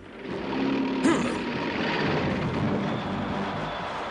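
A long rushing rumble from a cartoon sound effect. It swells over the first second and then slowly eases off.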